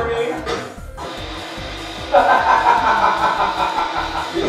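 Speech and music, with a louder stretch of music starting abruptly about halfway through.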